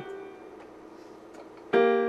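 Electronic keyboard with a piano voice: a held note fades out in the first half second, then near the end two notes, B-flat and the G above it, are struck together and held, sounding a major sixth.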